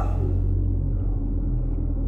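A steady, deep low drone, the bass of the film's underscore, sustained with no other sound over it.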